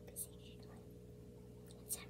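A quiet room with a steady low electrical-sounding hum, broken twice by brief faint whispered words, once just after the start and once near the end.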